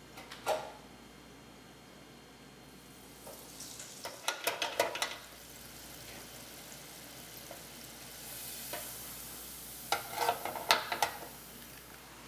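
Falafel balls frying in the hot oil of an electric deep fryer, with a faint sizzle that grows stronger near the end. Clusters of sharp metallic clicks from the fryer's wire basket come about four seconds in and again about ten seconds in.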